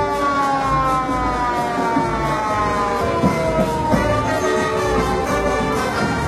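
Fire truck siren wailing in long, slowly falling sweeps, a new sweep starting about halfway through, over background music with a steady bass.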